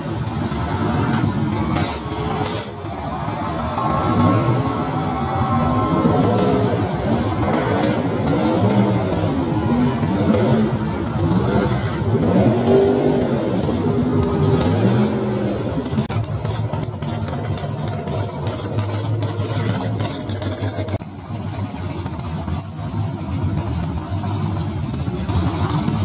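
Two modified mud-bog race trucks racing over dirt humps, their engines revving hard and repeatedly rising and falling in pitch as they accelerate and lift off. About sixteen seconds in, the sound turns to a steadier, lower engine note under a high hiss.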